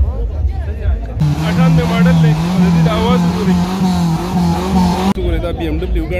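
A car engine held at high, steady revs for about four seconds, cutting in and out abruptly, with voices around it.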